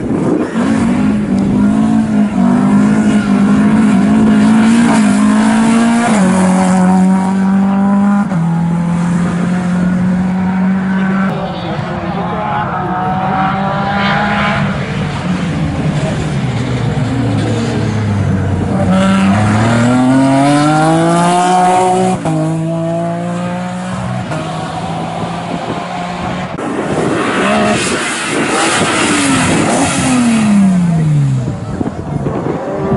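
Rally car engine held at steady high revs at the start line for several seconds, then pulling away hard through the gears, its note climbing and dropping with each shift. Near the end a second rally car comes close, its engine note falling as it passes.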